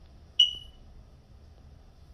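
A single short, high-pitched ding that fades out within half a second, over faint low room noise.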